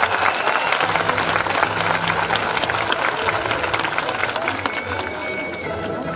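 Audience clapping, with crowd voices mixed in; the orchestra is only faintly heard underneath.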